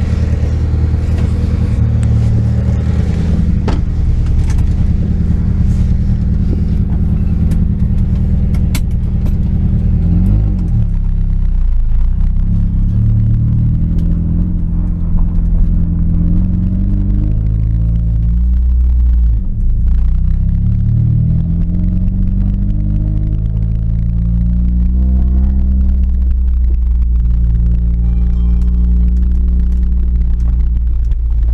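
1992 Honda Prelude's H23A1 four-cylinder engine idling, with scattered knocks and clatter over it for the first several seconds. It then revs and pulls away, its pitch rising and falling several times as the car accelerates and the gears change, heard from inside the cabin.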